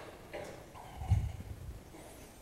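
Low, muffled thuds and knocks of a book and papers being handled on a lectern, picked up by its microphone, the loudest about a second in.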